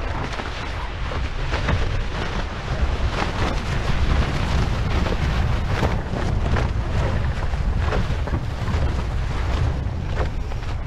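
Wind buffeting the microphone of a bow-mounted camera on a small catamaran under sail, with water rushing past the hulls and irregular crackles throughout.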